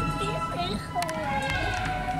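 Flute band music with long held notes and the bass drum beating softer, under nearby voices talking.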